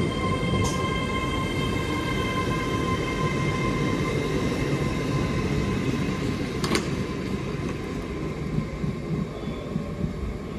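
GWR Class 800 intercity express train pulling away past the platform: a continuous rumble from its wheels on the track, with a steady whine that fades as it moves off. Two sharp clicks, the second about seven seconds in.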